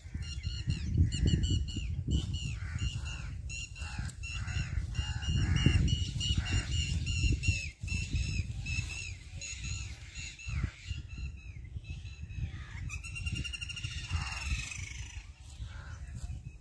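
A bird calling over and over in short, high, hooked notes, a few each second, breaking into a fast rattling trill near the end. A low rumble runs underneath.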